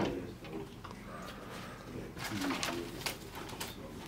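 An office door being opened, with a few light clicks and taps from the handle and door about halfway through, and low muffled voices from the room beyond.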